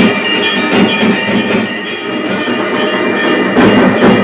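Temple bells and metal gongs ringing continuously over drumming during a puja aarti, a dense clanging din.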